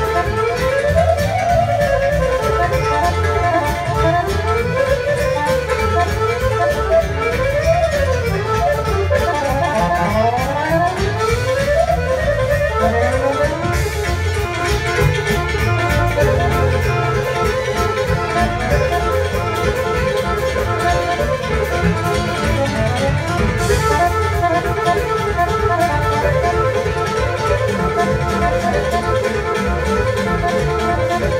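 Balkan folk instrumental played live by accordions over a double bass and steady beat, the lead accordion racing through fast runs that sweep up and down in the first half before settling into dense, steady playing.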